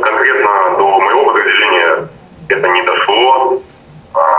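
Only speech: a man answering in Russian over a telephone line. His voice sounds thin and narrow, with two short pauses.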